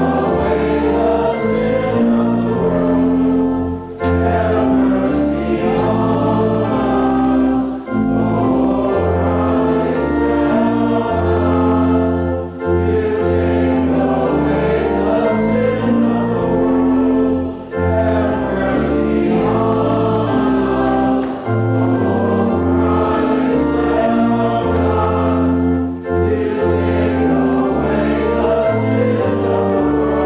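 A hymn sung by a group of voices with instrumental accompaniment. The music holds steady, with a brief dip in loudness between phrases every few seconds.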